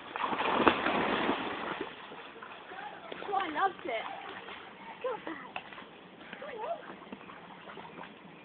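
A dog splashing into a shallow stream and swimming through it. The splashing is loudest in the first two seconds, then quietens to light water movement as it paddles.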